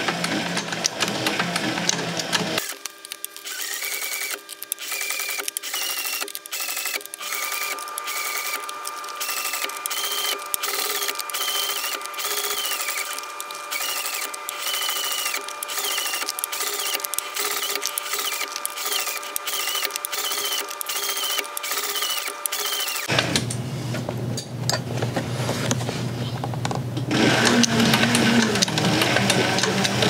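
Heavy-duty leather sewing machine stitching slowly through the thick leather of a purse's gusset and welt, a clack about twice a second.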